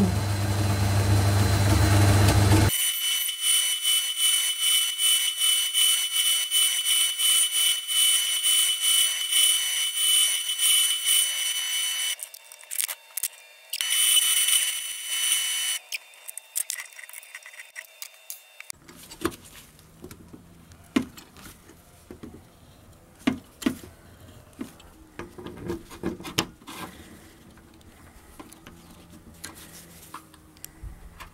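Benchtop metal lathe running while boring a 6 mm hole through an aluminium cylinder: a steady high whine with rapid even ticking. It breaks off and returns briefly in the middle, then stops about 19 seconds in, leaving scattered light clicks and taps of small metal parts being handled.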